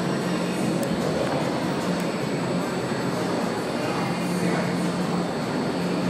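Steady background noise of an indoor show-jumping arena: a continuous low hum under an even wash of room noise, with no distinct hoofbeats or voices standing out.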